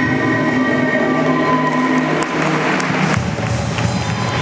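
A live band with electric guitars, horns and drums plays the held closing chord of a song. From about halfway through, drum and cymbal hits and a rising wash of crowd applause come in.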